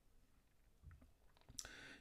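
Faint light clicks of a felt-tip pen tip dotting on paper, a few separate taps. A short breath near the end.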